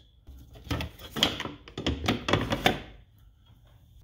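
Irregular clicks and knocks of hand tools and parts being handled in a car's engine bay, stopping about three seconds in.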